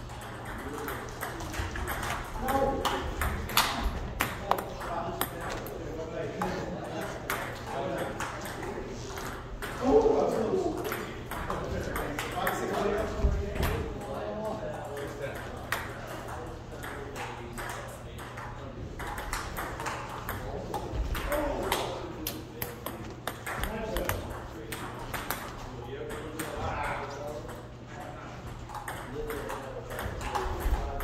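Table tennis rally: the celluloid-style ping-pong ball clicking back and forth off the paddles and the table in a steady run of sharp ticks, with short breaks between points.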